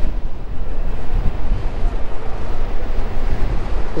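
Wind rushing over the microphone of a camera riding on a moving electric scooter: a steady, loud low rumble with no engine note.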